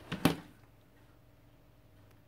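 A plastic hot glue gun set down on a wooden tabletop: a couple of sharp knocks in the first half-second, then quiet room tone with a faint steady hum.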